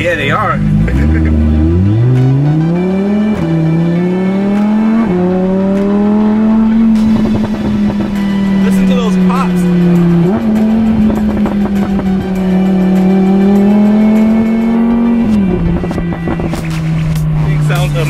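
Supercar engine heard from inside the cabin under a hard launch: the note climbs steeply over the first few seconds, drops sharply at quick upshifts about three and five seconds in, then pulls on with further shifts about ten and fifteen seconds in.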